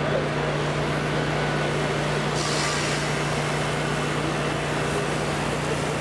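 Pressure washer running steadily: a constant motor hum under the hiss of the spray jet washing down a boat and trailer. The hiss grows brighter about two and a half seconds in.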